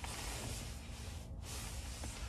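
Quiet background in a parked electric pickup's cabin: a faint steady hiss with a low, even hum and no distinct events.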